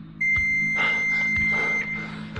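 A single high electronic alarm beep, held steady for about a second and a half, then cutting off.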